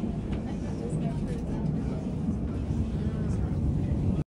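Steady low rumble of a passenger train running, heard from inside the carriage, with faint voices over it.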